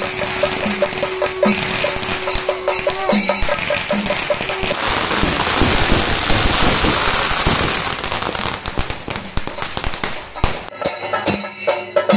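Rhythmic music with crackling at first, then from about five seconds a long, dense string of firecrackers going off in rapid crackles, dying away at about ten and a half seconds as rhythmic music returns.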